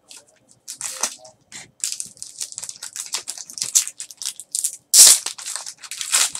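Foil trading-card pack wrapper crinkling and tearing open in the hands: a run of quick crackles, loudest about five seconds in.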